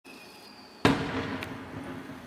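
Aerial firework shell bursting with one loud bang just under a second in, its rumble and echo fading over the following second, with a fainter crack shortly after.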